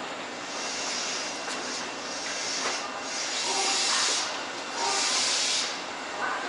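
Compressed air hissing in repeated bursts, about one a second, from a stationary Tobu 8000 series electric train's air system.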